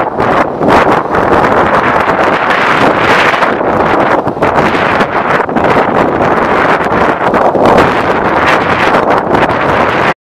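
Strong wind buffeting the microphone in gusts, over the low rumble of a departing train.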